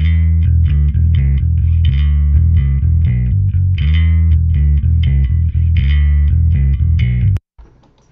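Yamaha PJ electric bass played through the Universal Audio Ampeg SVT amp-simulator plugin: a loud riff of quick low notes that cuts off suddenly near the end.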